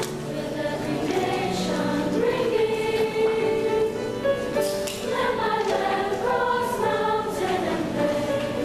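Large middle-school girls' chorus singing with piano accompaniment.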